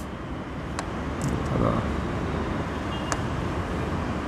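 Steady low background rumble, with two faint sharp clicks about a second in and about three seconds in.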